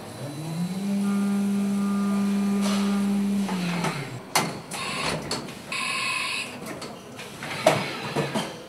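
Haas VF-2SS milling machine spindle whining up in pitch, running at a steady pitch for a couple of seconds, then winding down, followed by a few sharp clunks from the machine.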